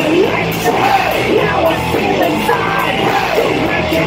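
Live rock band playing: electric guitar and drum kit, with a shouted, yelling vocal over the top.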